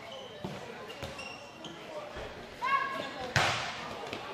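Handball match play in a sports hall: the ball bouncing on the court floor, brief high squeaks, and players' voices. About three and a half seconds in comes a sudden loud burst of noise that fades away.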